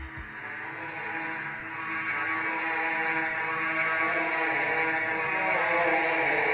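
A steady drone of several held pitches with a hiss underneath, slowly growing louder throughout.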